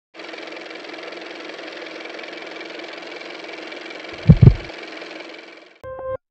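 Steady car engine and road noise, as heard from inside a moving car, with two heavy low thumps in quick succession about four seconds in. The noise fades out just before the end.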